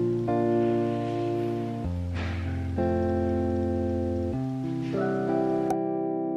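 Background music: sustained chords that change every one to two seconds.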